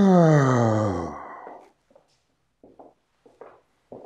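A man's long, voiced sigh that falls steadily in pitch and fades out after about a second and a half, followed by a few faint clicks and rustles.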